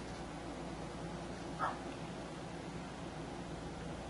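Steady low room hiss and hum, broken once, about a second and a half in, by a single short, sharp sound.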